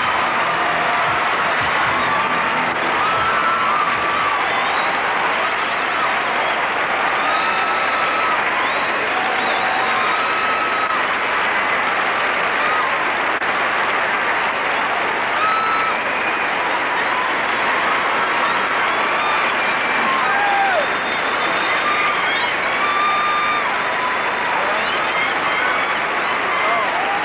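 Large auditorium audience applauding and cheering, with many high-pitched screams and whoops rising over the clapping.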